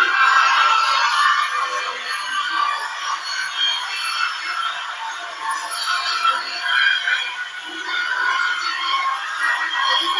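Many national anthems playing at once from the installation's small loudspeakers, a dense overlapping tangle of music with no bass that jumps louder right at the start.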